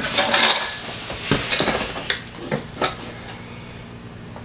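Small metal engine parts and tools clinking and clattering on a workbench: a burst of clatter at the start, then a string of lighter, separate clinks that die away after about three seconds.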